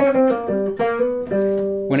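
Hollow-body archtop electric guitar played clean: a single-note blues riff in G, about six notes one after another.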